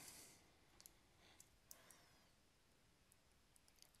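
Near silence: quiet room tone with a few faint, short clicks of a stylus tapping on a tablet while writing numbers.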